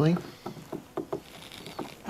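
Light, irregular clicks and taps, about seven in two seconds, from handling a carbon-fibre side skirt panel with a hand punch pressed against it.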